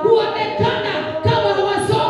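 A woman's voice singing unaccompanied into a microphone, in a run of held notes about half a second each.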